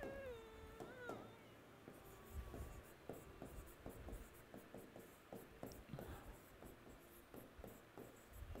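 Faint marker strokes on a whiteboard while writing: a scatter of short light scratches and ticks. A faint drawn-out pitched sound comes in the first second.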